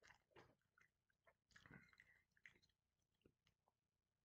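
Faint chewing of a mouthful of macaroni and cheese: scattered soft mouth clicks, a little louder about halfway through.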